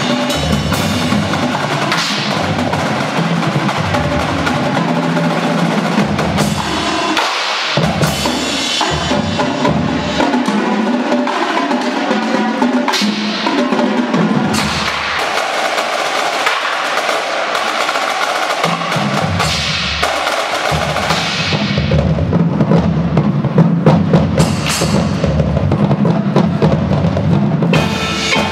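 Drum corps percussion section playing: snare drum rolls and bass drums together with front-ensemble mallet percussion, growing louder in the last third.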